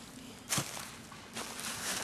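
Footsteps on dry leaf litter and bare soil as a person stands and walks away, with one sharp scuff about half a second in and more shuffling steps near the end.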